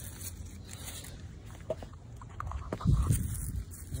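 Radish leaves rustling and crinkling as they are handled, sounding almost like plastic: scattered short crackles, then a louder, duller burst of rustling about three seconds in.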